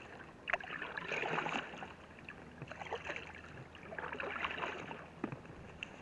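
Canoe paddle strokes in calm water, a splash and trickle of water about every one and a half seconds, three strokes in all, with a few short sharp knocks between them.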